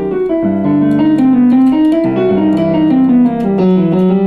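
Electronic keyboard in a piano voice: low chords held in the left hand while the right hand plays a run of single notes on the double harmonic scale, stepping down and back up over them.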